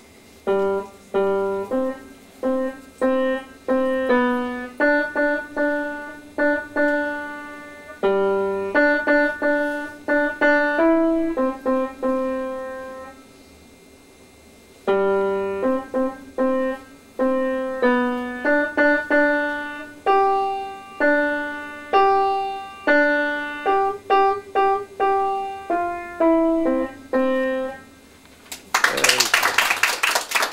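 A child plays a short, simple piece on an upright piano: separate notes in two phrases with a pause of about two seconds in between. Near the end the piece stops and the small audience breaks into clapping.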